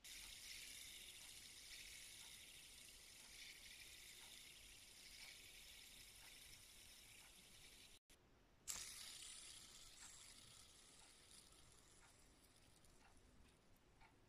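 Faint high whirring hiss of a fidget spinner's ball bearing spinning, slowly fading as the spinner loses speed. About nine seconds in, a second spinner is flicked into a spin with a sharper start, and its whir dies away over a few seconds.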